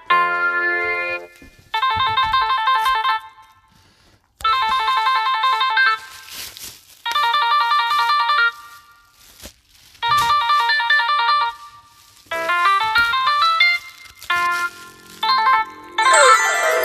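Electronic trilling telephone ring in a cartoon soundtrack. It comes in bursts of about a second and a half, repeating roughly every three seconds. Near the end it turns into a short rising keyboard tune.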